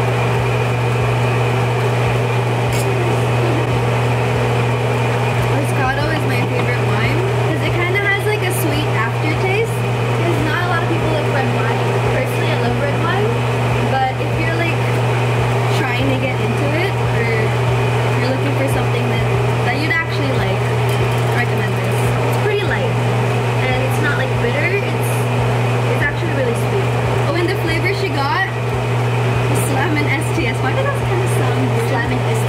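Steady low hum of a kitchen range hood fan running over the stove, with women talking indistinctly over it.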